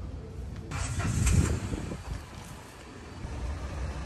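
A motor vehicle passing on the street: its noise swells about a second in and fades again, over a steady low rumble.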